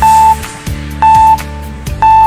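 Quiz countdown timer sound effect: a short, loud, high beep about once a second, twice here, over background music.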